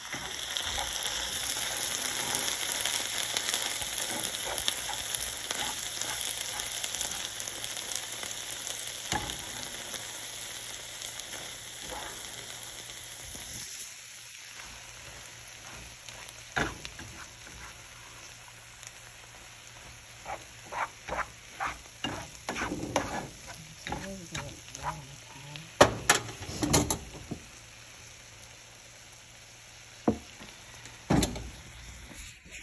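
Lentils and onions sizzling in a frying pan, loudest at first and fading after about 14 seconds. Then a spatula stirring them, with a run of scrapes and knocks against the pan, the loudest near the end.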